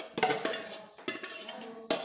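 Metal spoon knocking and scraping against a stainless steel pot while steamed carrot and potato cubes are scooped out, with about three clinks that ring briefly.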